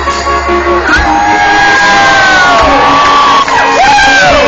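Loud live rock band with electric guitar, recorded from the audience on a mobile phone, with long sliding high notes over the band from about a second in.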